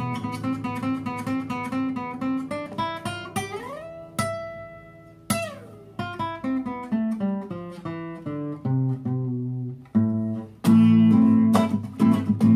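Acoustic guitar played solo: picked arpeggio notes, with a slide up the neck about three seconds in and a slide back down a couple of seconds later, then louder strummed chords near the end.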